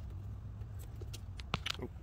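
Hands working a rubber heater hose in a car's engine bay: two sharp clicks about a second and a half in, over a steady low hum.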